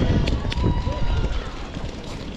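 Voices of football players calling out across an outdoor pitch, over a steady low rumble.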